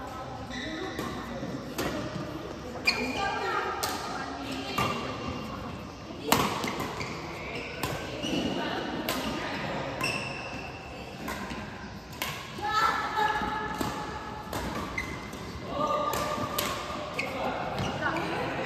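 Doubles badminton rally in a large echoing hall: rackets hit the shuttlecock with sharp cracks about once a second, with short squeaks from shoes on the court mat between shots.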